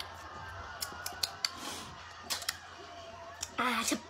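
A person licking powder off her fingers: a run of short, sharp mouth clicks and smacks over the first couple of seconds.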